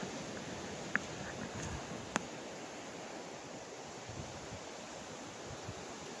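Steady outdoor wash of wind and distant ocean surf, with two faint clicks in the first couple of seconds.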